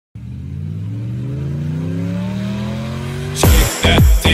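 A car engine revving up, its pitch climbing steadily for about three seconds; near the end, music cuts in with a heavy bass beat.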